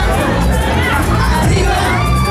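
Party crowd cheering and shouting over loud dance music with a heavy, steady bass.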